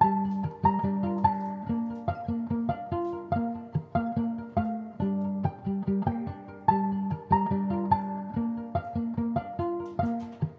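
Violin played pizzicato: quick plucked notes, each dying away, in a repeating pattern.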